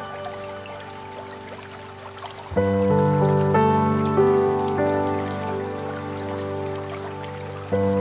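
Slow, calm piano music of sustained chords and single notes, quiet at first, then a fuller chord with a low bass note about a third of the way in and another near the end. A faint sound of running water lies underneath.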